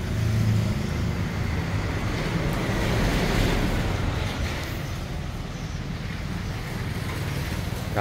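Honda Click 150i scooter's liquid-cooled single-cylinder engine idling steadily on its centre stand, a low even rumble.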